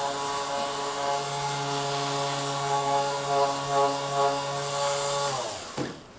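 Electric vibration therapy machine's motor running with a steady hum, then winding down, its pitch falling, and stopping about five and a half seconds in.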